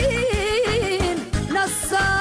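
Bosnian folk song: a woman's voice sings a long, ornamented melody line that wavers up and down in small trills, over a band with a steady beat.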